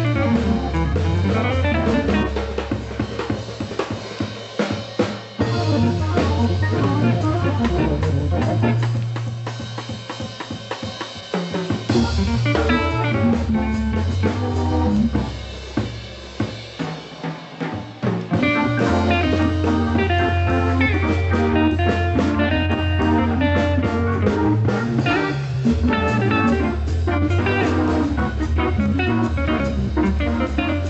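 Live jazz organ trio playing a swinging tune: Hammond organ with its bass line, electric guitar and drum kit. The steady bass drops back for a few seconds around the middle while the drums come forward, then returns under organ and guitar.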